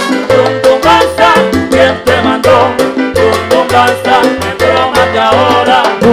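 Salsa band playing live, an instrumental passage with a bass line in a repeating rhythm, steady percussion and melody instruments over it.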